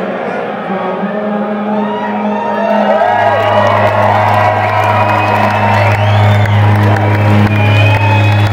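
Live rock band playing a low bass note, held steadily from about three seconds in, while the crowd cheers and whoops over it.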